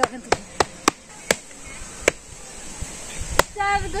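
A stick striking a bamboo winnowing fan, sharp cracks coming quickly at first and then spacing out, about seven in all; the fan is beaten to drive off ghosts. A voice calls out near the end.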